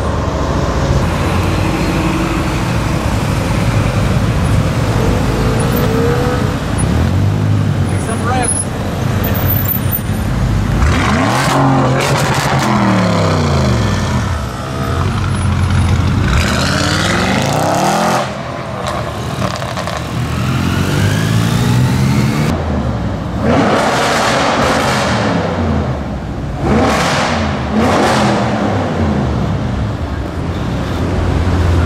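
Audi RS6 C7's twin-turbo V8 through a Milltek straight-pipe exhaust, very loud, revving and accelerating hard several times. The pitch sweeps up and falls back again and again, with a run of quick revs near the end.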